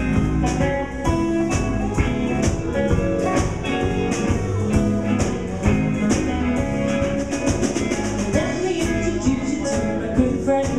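Live blues band playing an instrumental passage: electric guitar over bass and a drum kit, with cymbal strokes keeping a steady beat.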